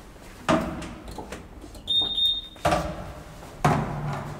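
Elevator doors being opened at a landing: a clunk about half a second in, a short high beep near the middle, then two louder thuds near the end as the manual swing landing door is unlatched and pushed open.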